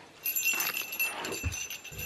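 A child's tambourine jingling in a few light shakes, with a soft knock about one and a half seconds in.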